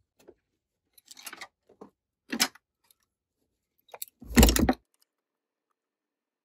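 Workbench handling noises: light rustling and a sharp click, then a louder thump about four seconds in as a digital multimeter is set down on the bench to measure resistors.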